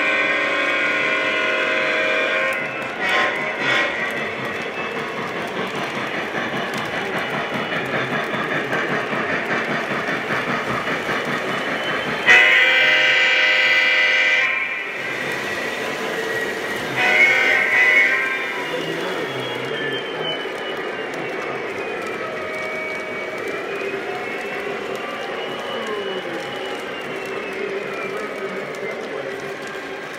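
Lionel Legacy O-gauge Pennsylvania Railroad steam locomotive's sound system blowing its chime whistle: a long blast at the start, another about twelve seconds in and a short one a few seconds later. Under it runs the steady rolling clatter of the locomotive and 21-inch K-Line passenger cars on the track.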